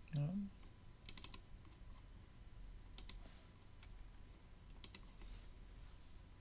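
A brief low murmur from a person just at the start, then faint computer keyboard and mouse clicks in three short bursts: about a second in, about three seconds in and near the end.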